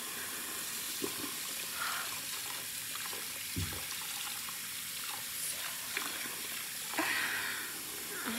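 Bathroom tap running steadily into a sink while soapy hands are rinsed under the stream, with small splashes. A short low thump about three and a half seconds in.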